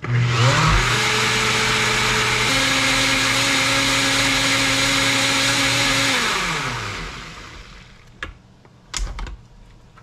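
NutriBullet blender motor starting up and running steadily for about six seconds as it blends frozen strawberries, banana and spinach, its pitch shifting a couple of seconds in. It then spins down with a falling whine, followed by a couple of light clicks near the end.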